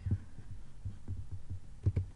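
Irregular soft low thumps, several a second, with a few sharper clicks: handling noise picked up by the microphone at the desk.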